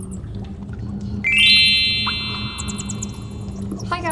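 Intro sound effect: a steady low, cave-like rumble with a bright synthesized chord that sweeps up about a second in and then holds, slowly fading.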